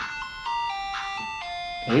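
Ice cream truck jingle: a simple chiming tune of held notes, stepping from one note to the next.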